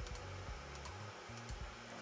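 A few light computer-mouse clicks at irregular intervals over a low, steady room hum, as a selection path is placed point by point in photo-editing software.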